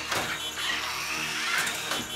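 Small electric motor of a toy remote-control car whirring, its pitch rising and falling.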